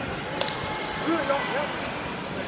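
Gymnasium crowd hubbub: distant voices calling out over the steady background noise of a big hall, with two short sharp ticks about half a second in.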